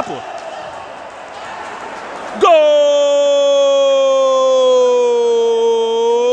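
A commentator's long drawn-out goal cry: one held note that starts about two and a half seconds in after a couple of seconds of hissy background noise, and slides slowly down in pitch for about four seconds.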